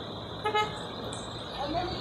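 A single short car horn toot about half a second in, over steady street traffic noise; voices come in near the end.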